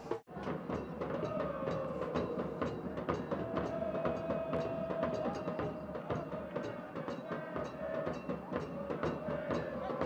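Soccer match ambience during live play: a steady background wash with many scattered drum-like beats and a faint held tone that wavers slightly.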